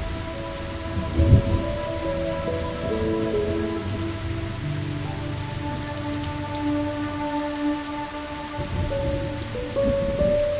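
Steady rain falling, with a low rumble of thunder about a second in, under slow, soft music of long held notes that step gently from one to the next.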